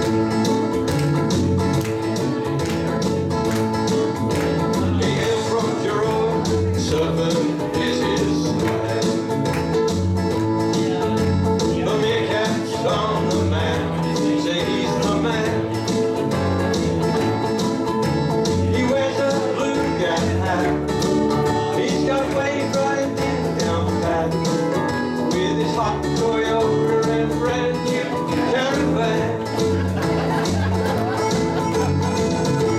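A group of ukuleles strumming together in a steady rhythm, playing an instrumental song intro.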